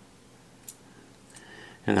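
Fishing line being pulled tight on a freshly tied San Diego jam knot: a quiet pause with one short, sharp click about two-thirds of a second in and a fainter tick a little later.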